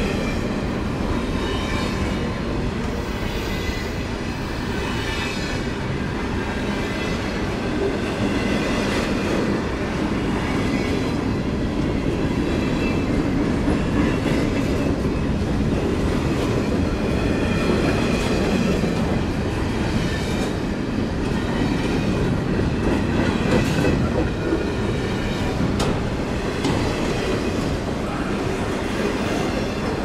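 Double-stack intermodal freight train's loaded well cars rolling past close by: a steady rumble of steel wheels on rail, with faint high wheel squeal over it.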